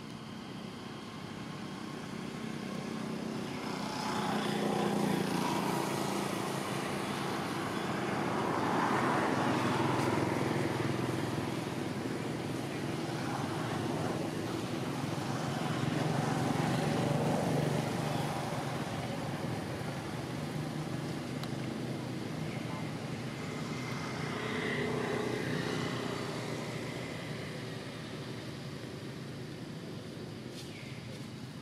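Engine noise of passing motor vehicles, swelling and fading about four times.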